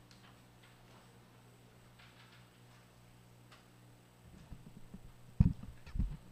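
Council-chamber desk microphone picking up a steady electrical hum and a few faint clicks, then handling bumps from about four seconds in, the loudest a sharp thump near the end.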